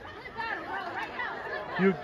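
Overlapping chatter of a crowd of spectators, with one nearby voice starting to speak near the end.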